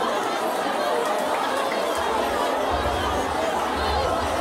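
Church congregation of many voices all speaking out at once, overlapping into a steady hubbub with no one voice standing out.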